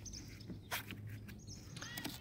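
Quiet outdoor background with a steady low hum, a few short clicks and a faint bird chirp near the end.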